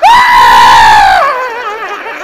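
A loud, high-pitched human scream held steady for about a second, then sliding down in pitch and wavering as it trails off.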